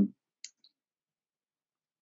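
The end of a held "um", then silence broken by one short, faint click about half a second in, with a fainter tick just after.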